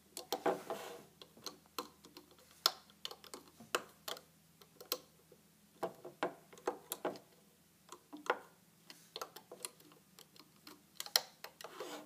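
Scattered light clicks and taps at an irregular few a second, as a metal-tipped hook works rubber bands over the pins of a plastic bracelet loom.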